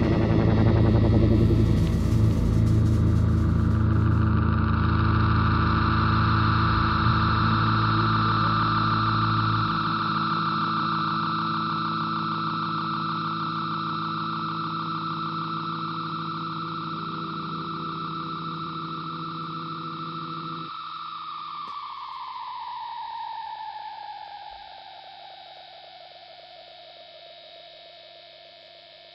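Rock band's final chord ringing out: the drums stop within the first few seconds, and the distorted guitars and keyboard hold and slowly fade. The lowest notes drop out about ten and twenty seconds in. Near the end, a held tone slides down in pitch as it dies away.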